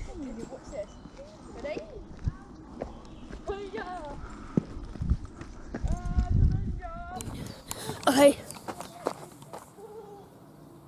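Voices calling out at a distance with wavering, drawn-out calls, over scattered footsteps and knocks on a concrete path; a brief loud noise about eight seconds in.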